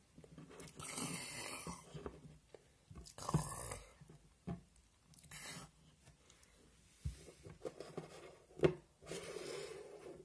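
Plastic toy ponies being handled and moved about, giving several short rustling bursts, with a couple of light knocks of a toy set down on a wooden table in the second half.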